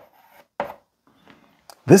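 Chalk on a blackboard: a few short scratching strokes as the numeral 5 is written.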